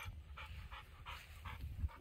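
XL American Bully dog panting, with quick, soft breaths about three to four a second.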